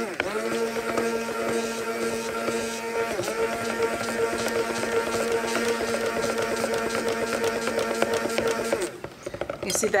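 Electric stick blender running steadily in a pitcher of cold-process soap batter, a hum that dips in pitch briefly about three seconds in and switches off near the end. It is blending out ricing, small grainy lumps that formed after the fragrance oil went in.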